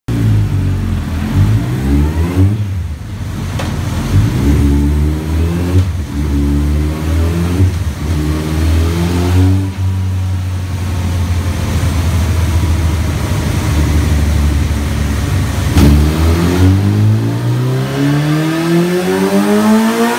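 Kawasaki ZX-14R's inline-four with a full Akrapovic exhaust running on a motorcycle dyno: the revs rise and fall several times, hold fairly steady, then from about 16 seconds in climb in one long rising rev as the dyno pull begins.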